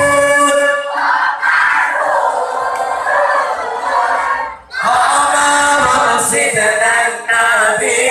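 Sholawat, Islamic devotional songs, sung by a lead singer on a microphone with a group of voices joining in. The singing breaks off briefly a little past halfway, then resumes.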